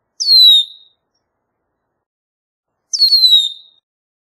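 Red-winged blackbird giving two clear whistled calls, each sliding down in pitch, about two and a half seconds apart.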